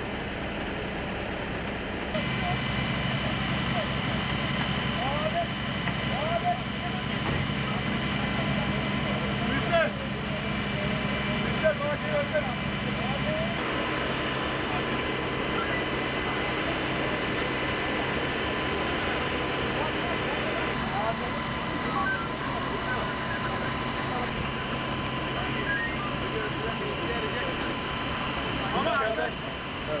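A fire truck's engine running steadily, with indistinct voices of people around.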